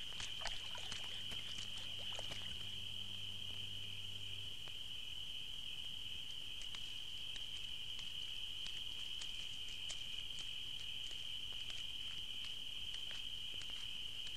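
Insects chirring in one steady high-pitched drone, with scattered faint ticks. A low hum underneath stops about four seconds in.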